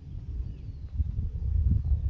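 Low, gusty rumble of wind and handling noise on a hand-held camera's microphone while it is carried around outdoors, growing louder about a second in.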